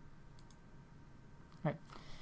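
Faint clicks of a presentation slide being advanced on a computer in a quiet room, followed by a short voice sound near the end.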